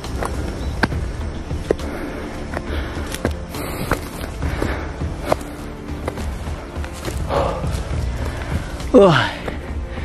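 Footsteps of a hiker climbing a steep slope of grass and loose soil, with scattered sharp crunches and snaps from the ground underfoot. About nine seconds in, a loud falling, tired exclamation of "oh".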